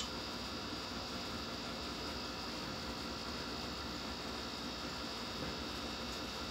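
Steady low hum and hiss of room tone, with faint constant tones running through it and no distinct event.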